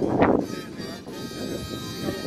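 A man's voice speaking, with a short loud burst just after the start; in the second half a steady held tone lasts about a second.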